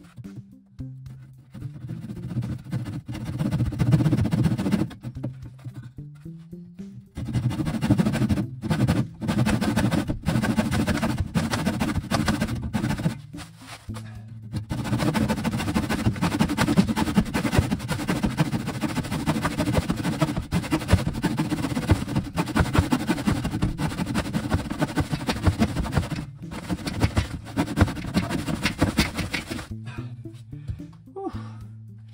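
Handsaw cutting through a wooden batten in quick strokes, with a few brief pauses, over background music.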